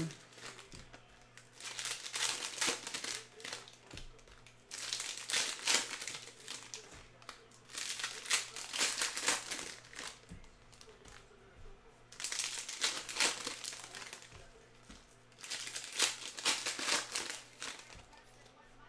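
Foil trading-card pack wrappers crinkling as they are torn open and handled, in bursts of a second or two with short quieter gaps, while cards are pulled out and stacked.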